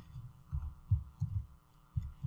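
Computer keyboard keys being pressed, heard as dull, irregular low thumps, about five or six in two seconds, over a steady electrical hum.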